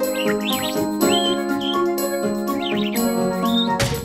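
Light children's cartoon background music with steady tones, over which short chirping whistles rise and fall in pitch several times. A sharp click comes just before the end.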